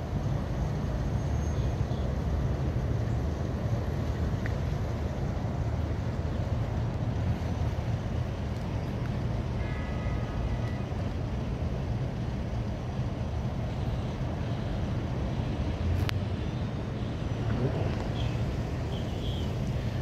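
Steady low rumble of road traffic and engine noise, with a brief faint tone about halfway through and a single sharp click later on.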